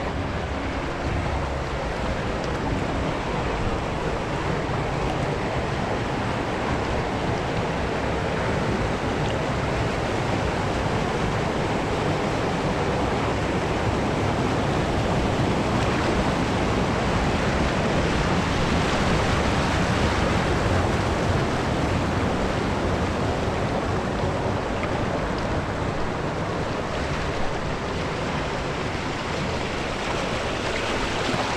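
Steady rushing and splashing water of a wild-river water-park ride, heard from a camera carried along in the current with water washing around it. There is a brief knock near the end.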